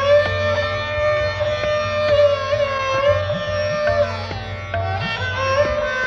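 Hindustani classical music in Raag Abhogi: a melodic line gliding slowly between held notes over a steady drone, with occasional tabla strokes and low, pitch-bending bayan strokes.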